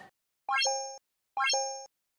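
Animated like-and-subscribe button sound effect: a quick rising pop that settles into a short ringing tone. It plays twice, about a second apart.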